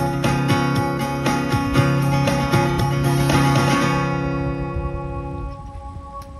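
Acoustic guitar strummed in a steady rhythm; the strumming stops about four seconds in and the last chord rings out and fades.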